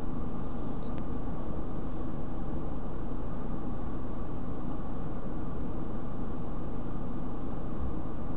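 Steady low hum and hiss of background noise, level and unchanging, with no distinct events.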